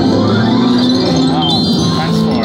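Video slot machine playing its electronic reel music and chimes as the reels spin and land, with a quick rising run of high tones about one and a half seconds in.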